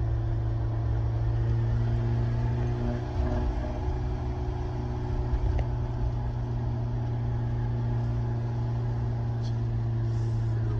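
A 1990 Nissan Pulsar GTI-R's turbocharged 2.0-litre four-cylinder engine running at a steady pace under way, heard from inside the cabin as a steady low drone with road noise.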